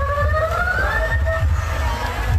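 Lakhaon bassac singing over a loudspeaker: one long held vocal note that slides slowly upward, with a low beat underneath.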